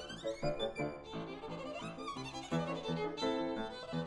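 Violin and grand piano playing together in a classical duo. The violin plays quick passages of short notes with a few longer held notes, over the piano accompaniment.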